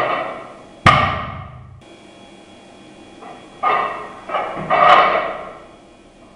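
Loaded barbell with iron plates on a wooden lifting platform: a sharp, heavy thud about a second in as the bar is set down, then a clatter of rattling plates and shoes from about three and a half seconds in as it is cleaned up to the shoulders, peaking in a sharp clank at the catch.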